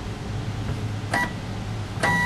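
Zebra ZM400 thermal label printer running its power-on factory-default reset and calibration routine: a steady low hum, with one short click and beep about a second in.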